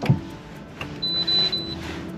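A single high electronic beep lasting under a second, about a second in, from the Subaru BRZ's dashboard as the instrument cluster powers up before the engine is started. Quiet background music runs underneath.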